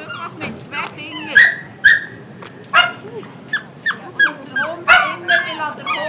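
Tibetan Spaniel yipping and whining in a rapid series of short, high calls that drop in pitch, with several louder, sharper yelps among them.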